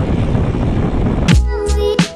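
Wind rushing over a GoPro action camera's microphone as a mountain bike rolls along a concrete road. About a second and a quarter in, this cuts abruptly to chill lo-fi background music with a beat.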